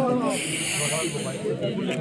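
A hiss lasting a little over a second, starting just after the beginning, over crowd chatter and voices.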